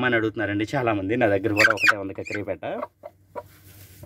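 Hen sitting on her nest, giving a loud run of wavering, growling clucks that stops about three seconds in. Faint rustling of dry grass follows.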